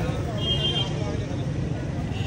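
Steady street noise: low traffic rumble with faint distant voices, and a brief high-pitched tone about half a second in.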